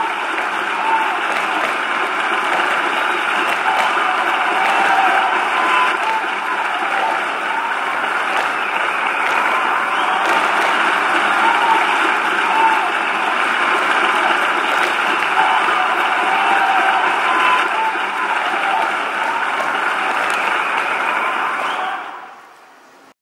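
Audience applauding steadily, with some voices mixed in; it fades out suddenly at the very end.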